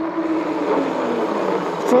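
Riding noise of a fat-tyre e-bike moving at about 30 km/h on asphalt: an even rush of tyres and air, with a faint hum that sinks slightly in pitch.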